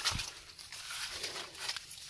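Footsteps swishing and rustling through wet grass, a few uneven steps.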